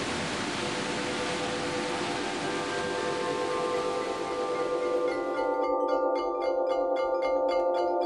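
Steady rush of a waterfall, with music fading in over it as long held tones. About five and a half seconds in the water sound drops out, and a quick, even run of chiming mallet-percussion notes carries on over the held tones.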